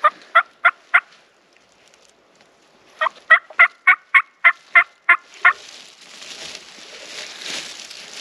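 Turkey hen yelps in two runs: four quick notes, a pause of about two seconds, then a longer run of about nine.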